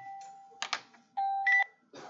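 Electronic beeping tones. A steady tone cuts off about half a second in, a short sharp click follows, and then a second tone sounds for half a second, with a higher tone joining it near its end.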